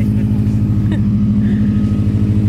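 A car engine idling with a steady low drone.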